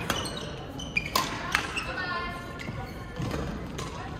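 Badminton rally in a sports hall: a few sharp racket hits on the shuttlecock, and shoe squeaks on the court floor, one longer squeak a little past halfway, with the hall's echo.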